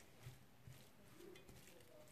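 Near silence, with a few faint ticks of a wooden spoon stirring minced meat and grated carrot in a frying pan.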